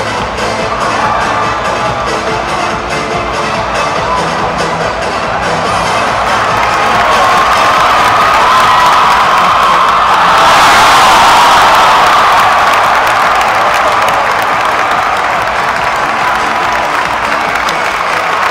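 Loud music over a cheering arena crowd. The cheering swells and is loudest about ten seconds in, then eases back.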